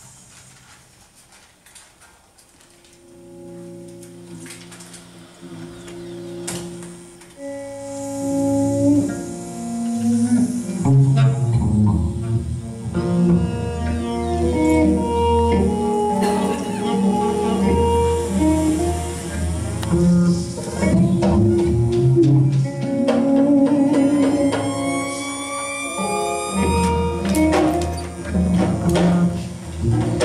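Live improvised ensemble music that starts almost silent, with sustained low notes coming in a few seconds in and the band building to full volume after about ten seconds, electric guitar among the instruments. Near the end, high sliding tones rise over the ensemble.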